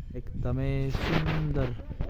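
A man's voice holding one long, drawn-out sound for over a second, over low rumbling and thuds on the microphone.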